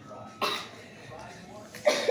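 Short bursts of a child's voice: a brief one about half a second in, then a louder one starting just before the end.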